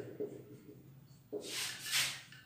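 Marker pen rubbing across a whiteboard while writing, with a few faint short squeaks and then one longer, louder scraping stroke about a second and a half in.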